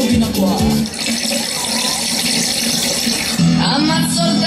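Playback music with a beat cuts off about a second in and gives way to about two seconds of steady hiss, a sound effect in the performance soundtrack; a new song starts near the end.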